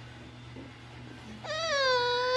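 A toddler's long, high-pitched whine, starting about one and a half seconds in, dipping slightly in pitch and then held steady.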